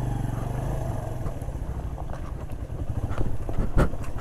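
Suzuki GS single-cylinder motorcycle running at low revs on a rough, stony dirt track, its engine beat steady underneath the rattles and knocks of the bike jolting over stones. The loudest knock comes near the end.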